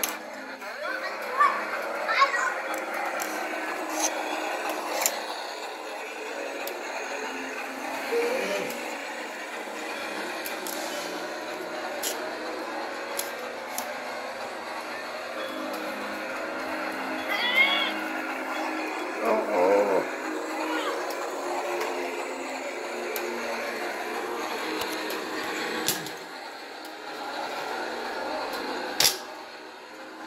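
A toy holiday train's small built-in speaker playing Christmas music, set off from its remote control while the train runs around its track. A child's short voice sounds come over it a few times.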